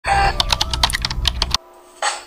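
A rapid, irregular run of loud clicks and taps over a low rumble, cutting off suddenly about one and a half seconds in.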